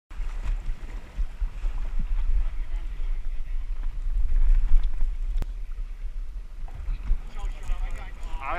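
Gusting wind buffeting an action camera's microphone aboard a fishing boat at sea, a loud, uneven low rumble, with one sharp click about five and a half seconds in and faint voices.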